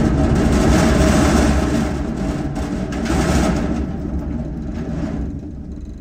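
Potatoes tumbling out of a tipped wooden pallet box into a metal hopper, a dense rumbling rattle over the running engine of a Merlo telehandler. The pour is loudest in the first three seconds and thins out after about five.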